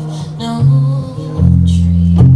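Solo guitar strumming and letting chords ring in an instrumental passage of a song, changing to a new chord about one and a half seconds in.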